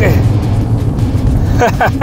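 A Chery Tiggo 8 Pro SUV driving, a steady low rumble heard under background music.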